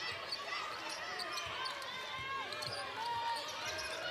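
Arena sound during basketball play: a basketball being dribbled on the hardwood court, with a steady murmur of many voices from the crowd and benches.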